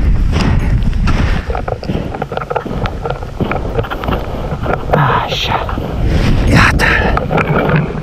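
Wind buffeting the microphone in a steady low rumble, with footsteps crunching in snow.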